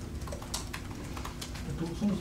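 Irregular light clicks of typing on a laptop keyboard, a few keystrokes a second over a faint low room hum.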